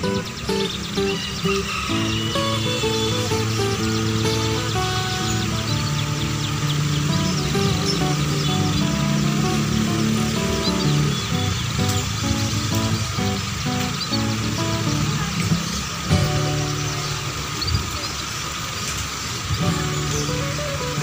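Background music with a steady melody, with canaries faintly chirping and singing over it now and then.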